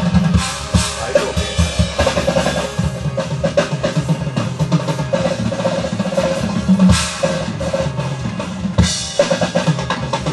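Acoustic drum kit played live, with a steady stream of kick, snare and tom hits. Two loud cymbal crashes ring out in the second half, about two seconds apart.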